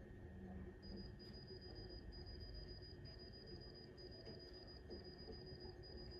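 Faint, high-pitched electronic beeping of a hospital monitor alarm, starting about a second in and repeating about twice a second, heard through a TV's speakers over a steady faint hum.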